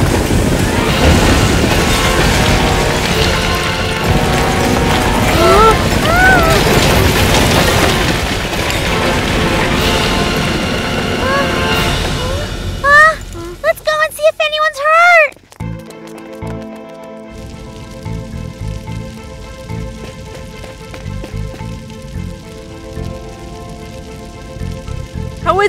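Cartoon sound effect of a building collapsing: a loud, noisy rumble under music for about the first twelve seconds. Short rising-and-falling vocal exclamations come near the middle and just past halfway, then quieter background music carries on to the end.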